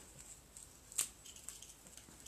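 Quiet handling of craft materials on a tabletop, with one sharp click about a second in and a few faint ticks after it.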